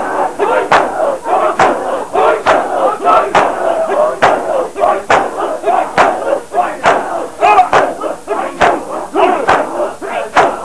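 A crowd of bare-chested men beating their chests in unison (matam), a sharp collective slap about once a second in a steady rhythm, under loud massed male voices chanting and shouting.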